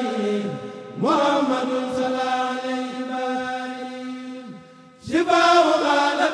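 Male voices of a Mouride kurel chanting an Arabic khassaid without instruments. The lead voice slides down, rises into one long melismatic note at about a second that slowly fades, then starts a loud new phrase near five seconds, over a steady lower note held underneath.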